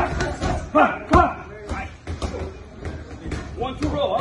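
Boxing gloves striking focus mitts in a rapid run of sharp smacks, about a dozen over the few seconds, with a trainer's short shouts between them.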